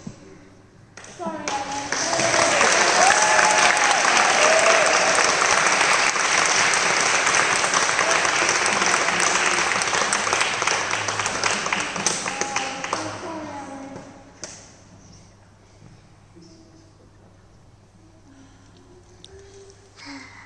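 Audience applauding for about twelve seconds, starting about a second in, with a few voices calling out over the clapping. The applause dies away near the two-thirds mark into quiet murmuring.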